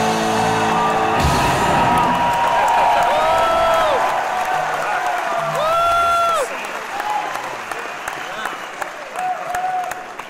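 A rock band's closing chord cuts off about a second in. The theatre audience then cheers and applauds, with several long rising-and-falling whoops, and the noise dies down after about six seconds.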